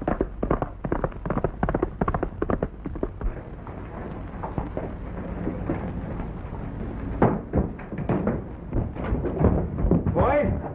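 A galloping horse's hoofbeats, a rapid run of strikes that eases off through the middle, followed near the end by a cluster of sharper knocks.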